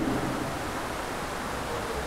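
Steady, even background hiss of room noise during a pause in a man's speech, with the last of his voice trailing off right at the start.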